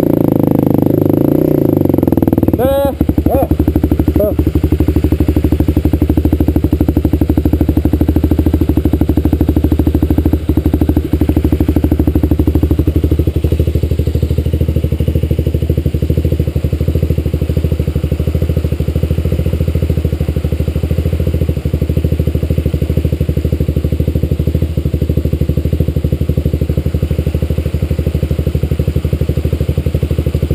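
Dirt-bike engine idling steadily, with dense, even firing pulses and a few short swoops in pitch about three seconds in.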